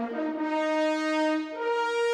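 Brass fanfare with sustained horn chords, one note shifting to a new pitch about one and a half seconds in: the studio logo sting that follows the cartoon's end credits.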